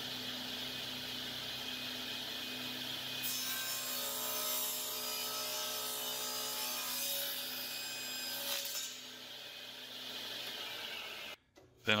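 Table saw running steadily, its blade cross-cutting a walnut board for about six seconds in the middle, then spinning free until the sound cuts off suddenly near the end.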